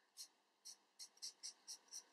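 Sharpie felt-tip marker drawing short strokes on paper: about seven faint, quick scratches as the segment lines are drawn, coming faster in the second half.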